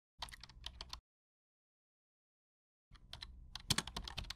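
Typing sound effect: rapid key clicks in two runs, a short one just after the start and a longer one beginning near the end, with dead silence between.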